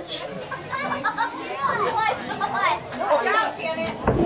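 Several people talking and exclaiming at once in indistinct, overlapping chatter, with some high-pitched voices.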